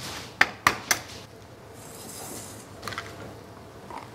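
A hen's egg being cracked: three sharp taps of the shell against a hard edge in the first second, then softer crackling as the shell is pulled apart.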